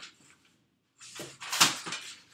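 Kitchen utensils rattling and knocking as someone rummages at a counter for a cutting tool, starting about a second in, with one loud knock about one and a half seconds in.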